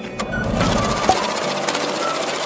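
A loud, harsh noise-burst transition effect, like static or a buzzing motor, comes in a fraction of a second in and holds over the background music as the title graphic glitches into place.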